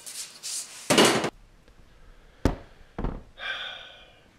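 A rasping sandpaper stroke on the wooden guitar neck about a second in, then two sharp knocks about half a second apart.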